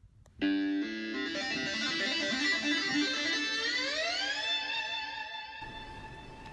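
ROLI Seaboard keyboard played with a plucked, guitar-like synth sound: a run of notes and chords. About three and a half seconds in, the chord slides smoothly upward in pitch and settles on a held chord. The held chord cuts off suddenly near the end.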